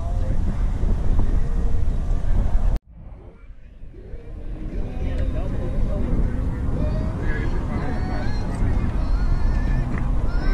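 Indistinct voices of people talking, over a steady low rumble. The sound cuts out abruptly about three seconds in and comes back quieter, building up again, with the chatter plainer from about halfway on.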